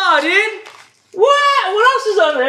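A high-pitched voice speaking or vocalising in two short stretches, with a brief pause about a second in.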